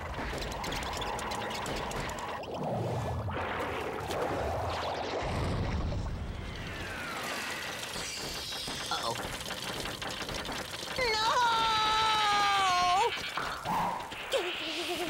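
Cartoon rocket-engine sound effect: a steady hissing rush with a low rumble in the first half. Near the end a loud, long cry slides down in pitch.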